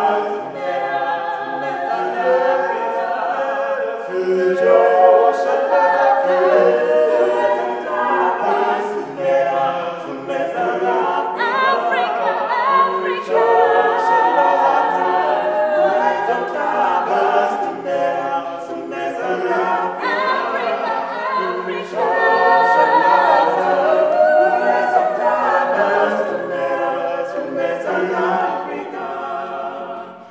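Ugandan mixed-voice gospel vocal group singing a cappella in harmony, male and female voices together. The singing drops away at the very end.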